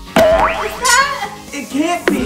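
Short wordless voice sounds whose pitch slides quickly up and down, over background music.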